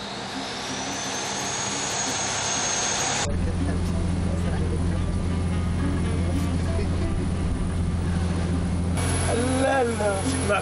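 Steady low drone of a fishing trawler's engine. It is preceded for about three seconds by a hissing noise carrying a high whine that rises and then holds level, which cuts off abruptly.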